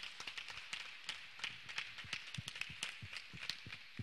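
Rapid, irregular light clicks and taps over a faint hiss.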